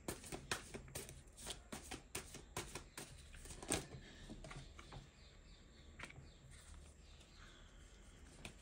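Tarot cards being shuffled by hand: a quick run of soft card clicks and flicks that thins out to a few scattered ones after about four seconds.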